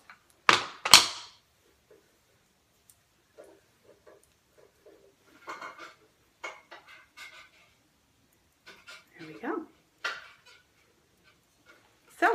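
Paddle brush pulled through curled hair: two loud swishes about half a second and a second in, then faint rustling of hair and fingers with quiet gaps.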